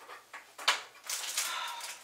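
A stove control knob clicking off once, followed by about a second of breathy hiss.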